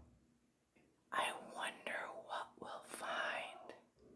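A woman whispering softly. It starts about a second in and lasts nearly three seconds.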